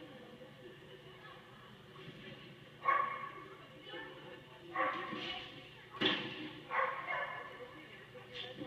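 A dog barking: four short, sharp barks spaced a second or two apart, starting about three seconds in, heard played back through a television speaker.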